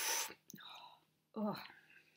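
A short, loud breathy hiss of air, then a groaned "ugh" of disgust about a second and a half in, from a person reacting to an intensely sour pickle-flavoured candy ball.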